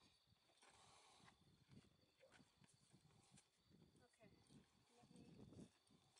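Near silence: faint rustling and light knocks as a child is boosted up into a saddle on a pony, with faint murmured voices.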